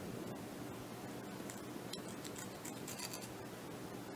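Faint scratching and small clicks of fingers handling sewing thread on a thin balsa prop spar, over a steady low background hum. The scratchy sounds come in a short cluster from about a second and a half to three seconds in.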